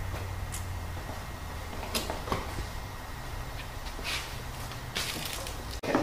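Quiet background with a few faint brief rustles and light clicks scattered through it, and a low hum that fades out about a second in.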